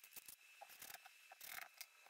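Faint ratcheting clicks from the keyless chuck of an 18V DeWalt cordless drill being turned by hand, as a bit is set or tightened. The clicks come irregularly, a little louder about one and a half seconds in.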